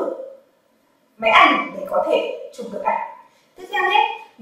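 A woman speaking in short phrases with a brief pause between them; only speech.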